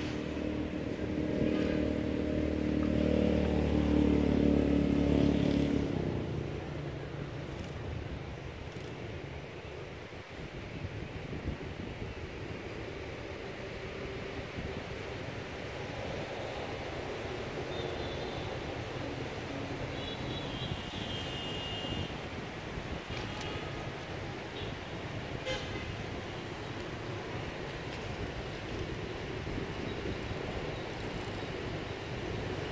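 A motor vehicle's engine running loud as it passes, fading away about six seconds in, followed by steady outdoor background noise with a few faint high tones.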